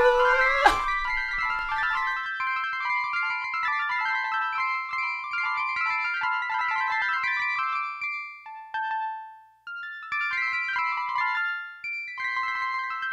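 Teenage Engineering OP-1 synthesizer playing a sequence from its tombola sequencer: a dense stream of short high notes. The notes thin to one held note about eight seconds in, drop out briefly, and start again about ten seconds in.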